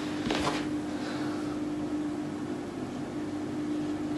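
A steady low mechanical hum, with a brief soft rustle about half a second in.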